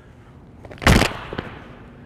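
A single sharp knock about a second in, as a tomahawk strikes and hooks the wooden shaft of a spear, followed by a couple of faint clicks.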